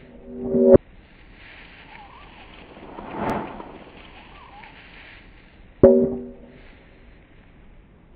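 A short pitched sound effect, heard first played backwards, swelling up and cutting off sharply, then about five seconds later played forwards, starting suddenly and fading away. A softer swell rises and falls between the two, over a faint hiss.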